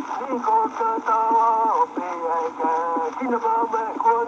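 Early-1900s wax cylinder recording of a Menominee singer, played back from its digitized copy: a single voice singing held, level notes with short slides between them, over the steady hiss of the turning cylinder.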